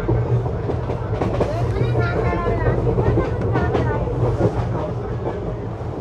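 ICF passenger coach of an express train running at speed: a steady low rumble of wheels on the track with scattered knocks and rattles.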